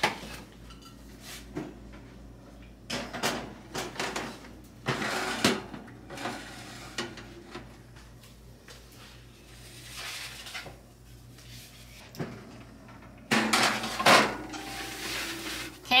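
Metal baking sheets clattering and scraping on wire oven racks as they are slid into an oven, with the oven door handled. The clatter comes in several separate bursts, the longest and loudest near the end.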